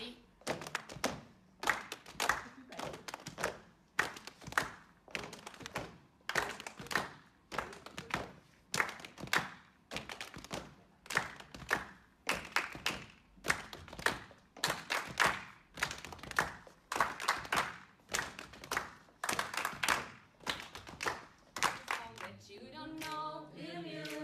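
A group of people performing a body-music rhythm of foot stamps and hand claps, repeated steadily at about two strokes a second. The pattern is right foot, left foot, clap, clap in 4/4. Voices come in singing near the end.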